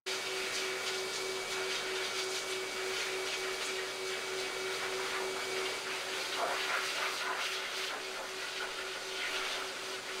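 Hose-fed pet grooming blow dryer running steadily, blowing air onto a dog's coat: a constant rush of air with a steady whine.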